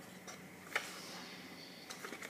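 Two small sharp clicks, about a second apart, from handling a cardboard box of food colouring and its small plastic bottles.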